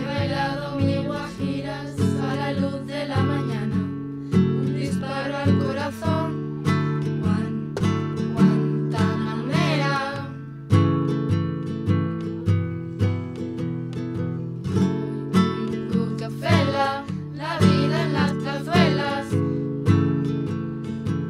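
Two acoustic guitars strumming a steady chord rhythm, with a group of young female voices singing over them in several stretches of a few seconds each.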